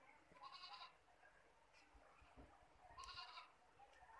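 Near silence with two faint, short animal calls, about two and a half seconds apart.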